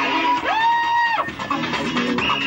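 Rave dance music playing over a sound system. About half a second in, a high note slides up, holds, and breaks off just after a second.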